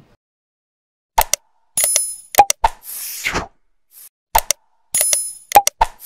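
Sound effects of an animated subscribe-button outro: after a second of silence, a run of sharp clicks, a bright bell-like ding and a short whoosh, with the same sequence starting again about three seconds later.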